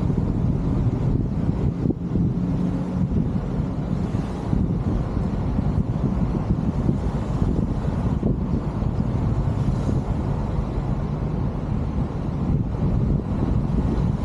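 Wind buffeting the microphone of a camera held outside a slowly moving car, a steady low rumble with the car's running and tyre noise underneath.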